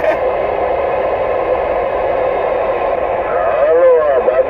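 Uniden Grant XL CB radio receiving: a steady hiss of static, with a weak station's garbled, warbling voice breaking through near the end.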